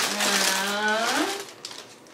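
A woman's long, drawn-out filler "um" held at an even pitch for just over a second, then fading into quiet room sound.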